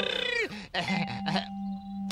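A cartoon character laughing, with a held note of background music sounding under it from about a second in.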